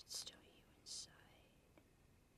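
Near silence with faint whispered speech: a couple of brief hissy syllables in the first second.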